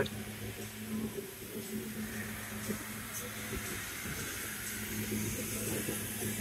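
Vehicle driving slowly, heard from inside the cab: a steady low hum of engine and road noise with a faint hiss.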